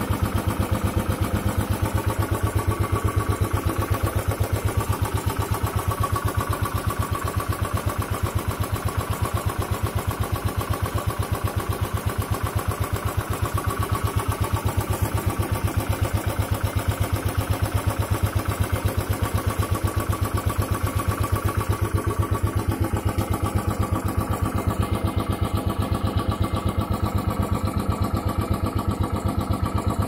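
Royal Enfield Classic 500's air-cooled single-cylinder engine idling in neutral with a steady, even thumping beat. The engine is warmed up to operating temperature.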